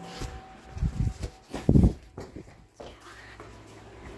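A few loud, dull low thumps about one and nearly two seconds in, from a phone being jostled in the hand as it is carried.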